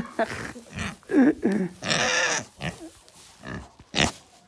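A pig giving a string of short grunts close to the microphone.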